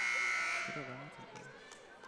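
Gymnasium scoreboard horn sounding one long, steady buzz. It cuts off about three-quarters of a second in and dies away in the gym's echo.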